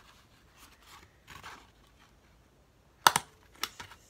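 Paper strip and paper plate rustling lightly as they are handled, then a tiny stapler snapping shut through the strip and plate: a sharp, loud click about three seconds in and a second, softer click about half a second later. The little stapler takes a hard push to drive the staple.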